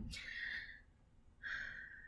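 A woman breathing between words: a soft breath out at the start, then a breath in just before she speaks again, with near silence in between.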